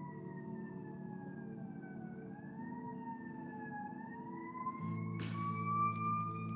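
A siren wailing slowly, its pitch falling for about two seconds and then rising again, over soft ambient background music with held low chords. A brief rustle of paper comes near the end.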